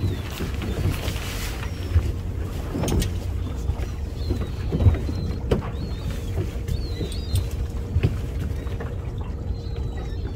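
Small leisure fishing boat rocking on a calm sea: a steady low rumble of water against the hull, with scattered knocks and bumps from the boat's fittings and a few faint short chirps.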